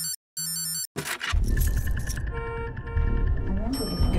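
Electronic alarm beeping in short, evenly spaced beeps that cut off about a second in. Loud music with deep bass follows, and a voice begins "Good morning" at the very end.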